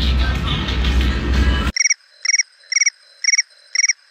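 Background noise that cuts off abruptly, leaving a cricket-chirping sound effect on an otherwise silent track: five short trilled chirps about half a second apart, the stock comic cue for an awkward silence.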